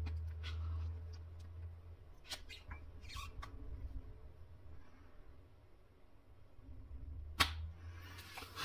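A clear plastic case being pressed by hand onto a Samsung Galaxy S22 Ultra: scattered small clicks and snaps as its edges seat around the phone, the sharpest one near the end, over low handling rumble at the start.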